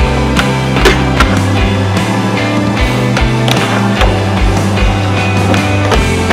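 Rock music soundtrack with guitar, mixed with skateboard sounds: urethane wheels rolling on concrete and several sharp clacks of the board's deck and trucks hitting the ground.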